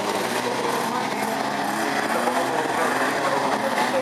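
Engines of banger racing cars running on a dirt track, steady and mixed with the chatter of a crowd of spectators.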